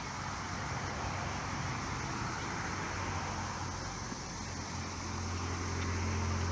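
Steady outdoor background noise: an even hiss with a low hum that grows louder near the end.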